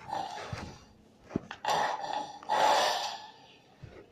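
Heavy breathing: a few loud breaths, two longer ones back to back in the second half, with short clicks between them.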